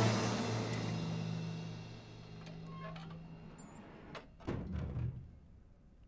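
Background music with sustained tones fading out, then a few light clicks and a heavy wooden door opening with a low thud about four and a half seconds in.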